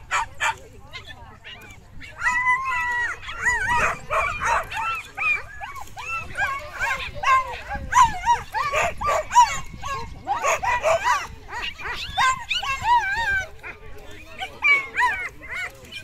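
Cairn Terriers barking, yipping and whining excitedly, short high calls overlapping several times a second from about two seconds in, busiest through the middle.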